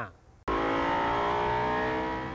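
A car engine running at steady revs, starting abruptly about half a second in after a brief near-silence.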